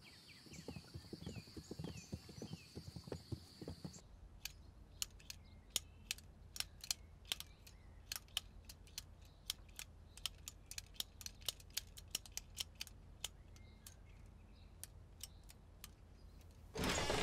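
Birds chirping faintly for the first few seconds, then an abacus being worked: its beads click in quick, irregular runs as sums are tallied.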